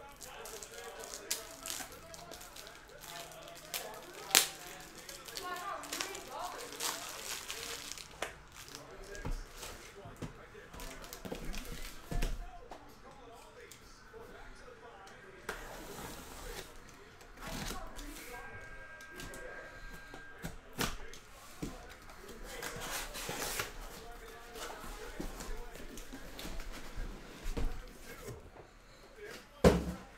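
Cardboard shipping case being opened by hand: several long rips of packing tape and cardboard, with scattered knocks and clicks of the case being handled.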